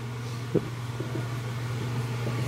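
Steady low hum of room noise, with a few faint short ticks, one about half a second in.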